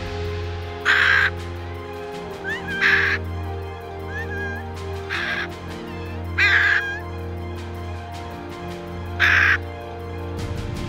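A macaw in free flight giving four loud, harsh screeching calls, spaced roughly every two and a half to three seconds, over background music.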